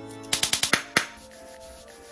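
A metal utensil clinking against a ceramic bowl as a cornstarch-and-water slurry is stirred: a quick run of about six sharp clicks in the first second, then it stops. Steady background music runs underneath.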